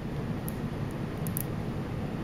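Steady low room noise with a few faint, sharp clicks of small neodymium magnet spheres snapping against each other as two pentagons of magnet balls are pressed together.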